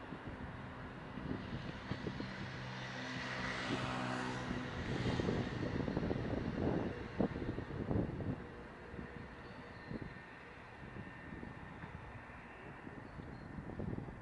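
A motor vehicle passing on a city street: a steady engine hum with tyre noise that swells to a peak about four seconds in and then fades away.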